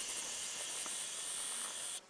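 Steady high hiss of outdoor background noise with no distinct events, cutting off abruptly at the end.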